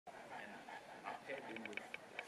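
A large Boerboel mastiff panting with its mouth open, under faint voices of people, with a quick run of light clicks near the end.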